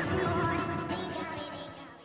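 Several cartoon soundtracks playing over one another: music mixed with animal-like cries, fading out near the end.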